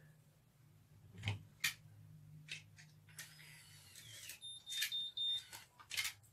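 Curl Secret automatic hair curler at work in the hair: a low hum with a few clicks and rustling of hair, then a steady high electronic beep lasting about a second, the curler's timer signal.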